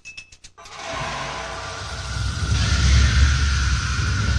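Intro music or sound design: a fast ticking beat stops about half a second in and gives way to a swelling rumble and hiss with a steady high tone, growing louder.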